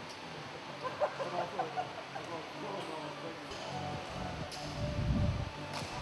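Gym ambience: indistinct background voices, a few sharp clicks, and a low rumble that builds in the second half.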